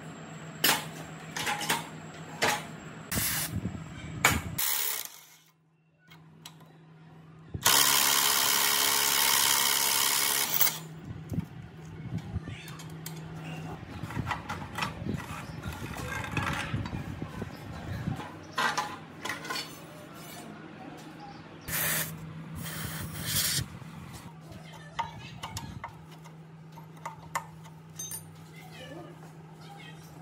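Scattered metal clanks, knocks and scrapes from hand work on a rusty walking tractor's frame, tines and gearbox. About eight seconds in comes one loud noisy burst lasting about three seconds.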